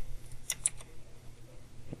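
Computer keyboard keys clicking in a quick cluster about half a second in, with a few fainter clicks later, over a low steady hum.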